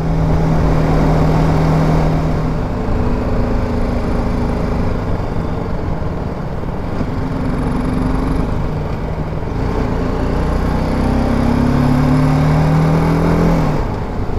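BMW G310GS single-cylinder motorcycle engine running at low speed, its note stepping up and down with the throttle, climbing slowly in the last few seconds and then dropping off just before the end, over a steady rush of riding wind.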